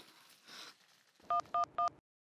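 Mobile phone keypad tones: three quick two-tone dialing beeps as number keys are pressed, about a quarter second apart, in the second half.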